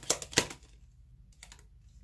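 A deck of tarot cards shuffled by hand: a quick run of sharp card snaps in the first half-second, then a couple of faint clicks about a second and a half in.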